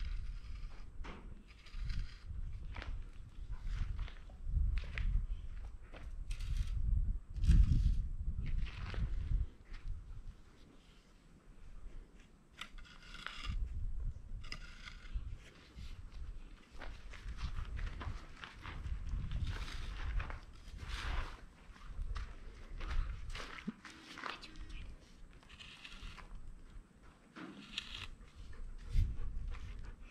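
A wooden stick scratching lines and circles into a packed dirt floor in short, separate strokes, with shuffling footsteps on the dirt.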